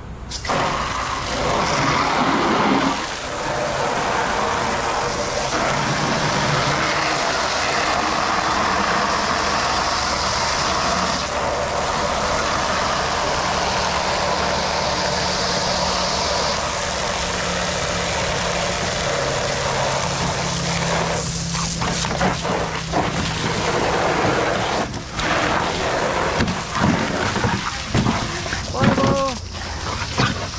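Water gushing from a garden hose into a plastic kiddie pool: a steady, loud rushing hiss that breaks up after about twenty seconds.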